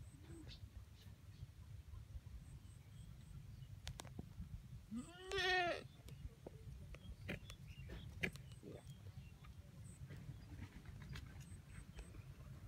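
A goat bleats once, about five seconds in, a single call that rises and then falls in pitch. A steady low rumble and a few faint clicks lie underneath.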